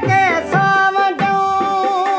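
Sindhi folk song: a man sings a long held, wavering note with tabla beating underneath.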